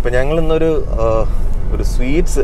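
A person talking inside a moving car, over the steady low rumble of the Renault Triber's engine and tyres in the cabin.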